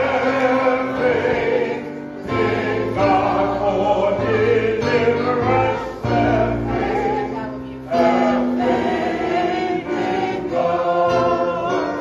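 Gospel choir singing a hymn with instrumental accompaniment, the low chords held and changing every second or two.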